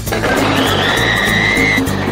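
Izzy multi 600 electric food chopper running as its blades chop raw vegetables, with a steady high whine that stops just before the end. Background music plays throughout.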